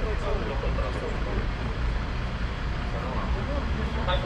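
Low, steady rumble of a city bus idling at the stop, with people talking indistinctly in the first second or so.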